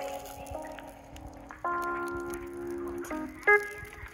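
Background music: sustained pitched chords that change every second or so, with a louder, brighter chord a little past halfway.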